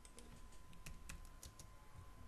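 Faint computer keyboard typing: a scattered run of soft key clicks as a few letters are typed.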